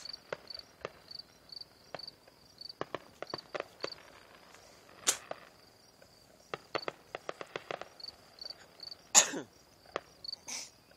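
Distant fireworks popping and crackling in clusters, with a sharp bang about five seconds in and a louder one near the end. A cricket chirps in a steady rhythm behind them.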